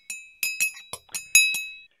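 A teaspoon clinking against a cup, about eight quick light strikes with a short high ring after each. It is the live sound effect of spooning coffee crystals into a cup.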